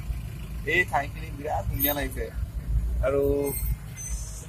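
Steady low rumble of a car driving, heard from inside its cabin, under a few words of speech.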